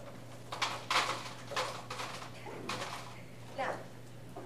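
Vanilla wafers poured from a cardboard box into a metal bowl, clattering in four or five short rattles.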